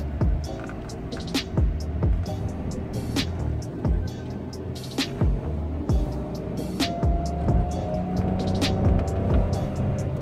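Background music with a steady beat of deep bass drum hits and sharp high percussion.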